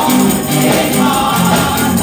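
Live gospel praise music: women's voices singing over a band with a steady beat and tambourine.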